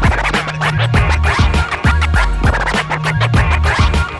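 Vinyl record scratching on a turntable, worked by hand through a DJ mixer: quick back-and-forth scratches that slide up and down in pitch over a beat with a deep bass line and steady drum hits.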